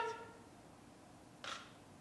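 Mostly quiet room tone between spoken lines, opening on the trailing end of a man's voice. About one and a half seconds in comes one brief, faint hiss.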